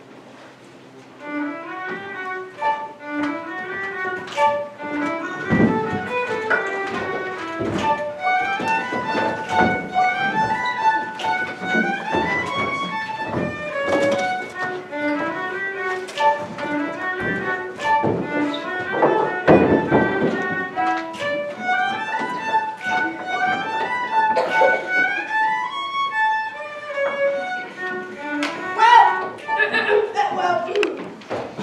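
Lively fiddle tune starting about a second in, with occasional thumps mixed in.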